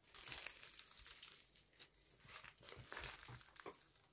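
Green slime with embedded beads being squeezed, folded and stretched by hand, giving quiet, irregular crackling and popping clicks.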